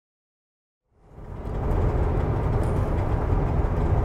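Steady low rumble of a vehicle driving, engine and road noise heard from inside the cab, fading in about a second in.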